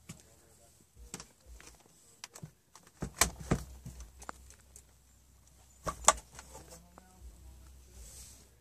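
Scattered clicks and knocks of handling inside a small motorhome, with a low hum underneath from about three seconds in. The loudest knocks come about three seconds in and again about six seconds in, where the refrigerator door is opened.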